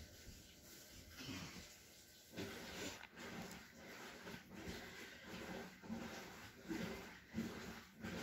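Faint rustling of cloth being handled: fabric lifted, shaken out and smoothed flat over another cloth, in a series of soft swishes that come more often in the second half.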